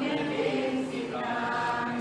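A group of voices chanting a line of a Sanskrit shloka together in unison, rather softly, as a class repeating the verse after its teacher.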